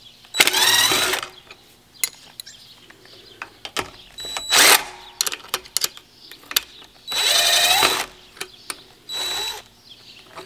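Cordless drill/driver run in four short bursts, spinning up each time, with sharp metallic clicks of a wrench between them, as fittings are worked off a sprayer boom pipe.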